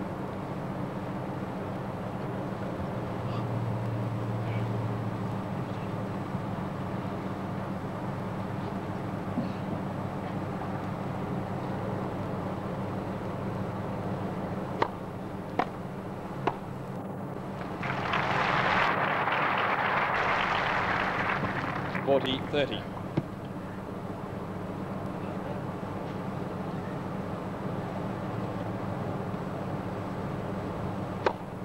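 Tennis ball struck back and forth by racquets, a few sharp pocks about fifteen seconds in, followed by a few seconds of crowd applause when the point ends. A steady low hum and crowd murmur lie under it all.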